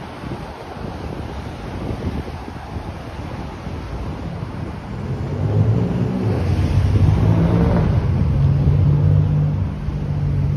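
Road traffic on a winter city street: a motor vehicle's engine grows louder from about halfway through and runs close by, with a steady low hum. Wind rumbles on the microphone underneath.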